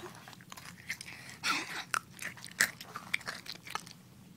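Crunchy chewing and biting right at the microphone: an irregular run of sharp crunches and clicks.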